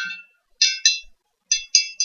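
A chopstick clinking against the inside of a glass jar while water is stirred. There are five short, bright clinks: two about half a second in, then three in quick succession in the second half.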